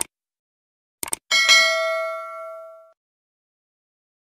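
A click, then a quick double click about a second in, followed by a single bell ding that rings out and fades over about a second and a half: an end-screen subscribe-and-bell sound effect.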